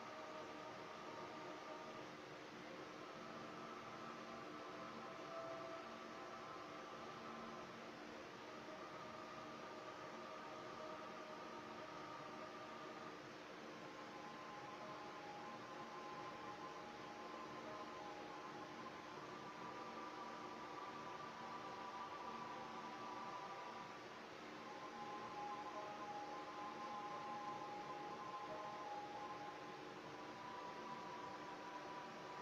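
Faint soundtrack of a 3D graphics benchmark playing through a ZTE ZMAX Pro smartphone's speaker: ambient synth music of held tones that move to a new chord every five seconds or so, over a steady hiss.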